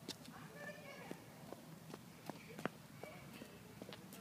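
Footsteps on asphalt pavement: a series of faint, irregular clicks and scuffs of shoes, about one every half second.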